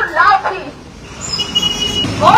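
A woman's voice shouting through a handheld megaphone, cutting off about half a second in. Near the end a thin, steady high squeal sounds for about half a second.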